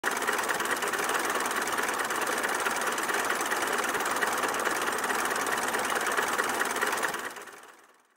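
Early four-cylinder car engine of a 1904 Panhard et Levassor 15HP running steadily, with a rapid, even firing beat. It fades out in the last second.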